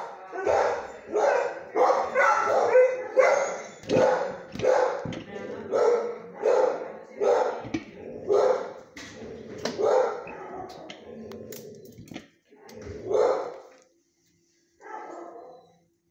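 A dog barking in a shelter kennel: a steady run of barks, about one and a half a second, for roughly ten seconds, then a pause and two more single barks.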